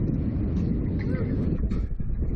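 Wind buffeting the onboard camera's microphone as the Slingshot reverse-bungee ride's capsule swings through the air, a loud, steady low rumble.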